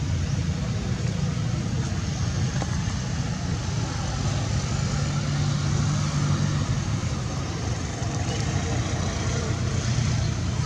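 Steady low rumble of an idling engine, with a constant hiss above it and a slightly stronger hum about halfway through.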